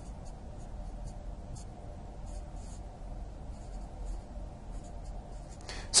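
Marker writing on a whiteboard: a run of short, faint scratchy strokes as a line of symbols is written out.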